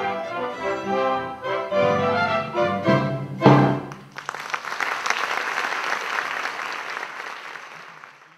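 Theatre orchestra playing the closing bars of a song, ending on a loud final chord about three and a half seconds in. Audience applause follows and fades out near the end.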